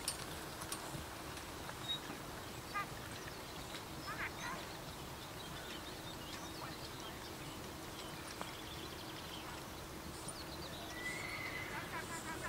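A horse whinnying over faint outdoor ambience, with scattered light clicks.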